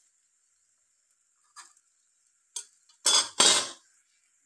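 Metal spatula on a tava (flat griddle pan): two light clinks, then two loud metal-on-metal scraping clatters about three seconds in.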